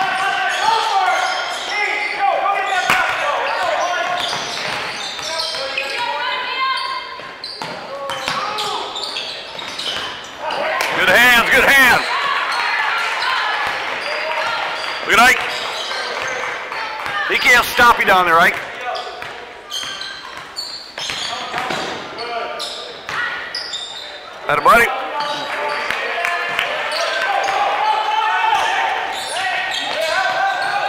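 Basketball game on a hardwood gym floor: a ball bouncing, indistinct voices of players and spectators echoing through the hall, and several sharp sneaker squeaks, the loudest in the middle of the stretch.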